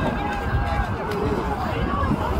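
Wind buffeting the microphone in a steady low rumble, with indistinct distant voices calling over it.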